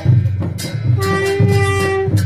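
Folk music: drum beats, with a long steady held note from a horn-like instrument or voice over them through the second half.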